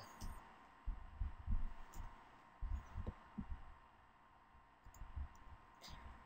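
Faint, irregular low thumps, about half a dozen, with a couple of soft clicks, as a computer mouse and keyboard are worked at a desk, over a faint steady hum.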